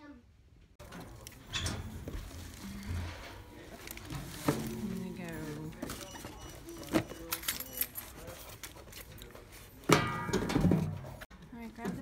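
A parcel pushed into a metal package-drop chute, with a few sharp knocks, over indistinct voices and background music.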